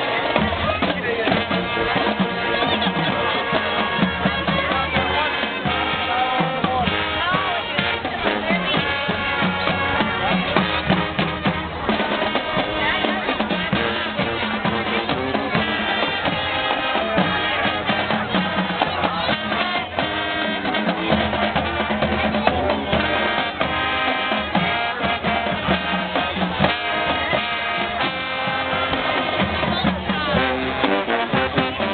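High school marching band playing, brass with drumline percussion and bass drums.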